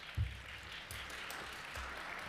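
Audience applauding, a steady patter of many hands clapping, with one low thump about a quarter second in.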